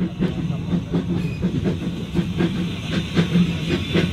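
Small Andrew Barclay industrial steam tank locomotive working a passenger coach, its exhaust giving a quick, regular beat of about four chuffs a second over hissing steam.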